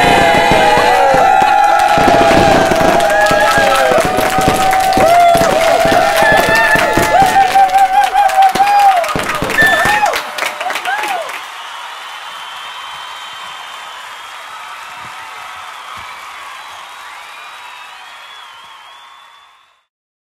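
A group cheering and whooping with clapping over music, loud for the first half and breaking off about eleven seconds in. A quieter sustained tail follows and fades out to silence just before the end.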